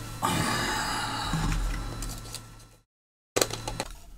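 The motherboard being cleaned with alcohol after the chip removal: a noisy hiss that fades over about two and a half seconds and then stops abruptly, followed near the end by a short burst of clicks.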